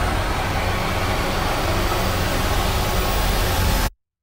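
Trailer sound design: a loud, dense swell of noise over a deep rumble, with a faint rising whine on top, that cuts off suddenly to dead silence just before the end.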